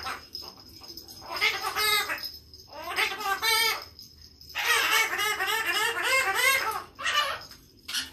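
Pet green parrot chattering and babbling to itself in four bursts of warbling, speech-like sounds, the longest about two seconds.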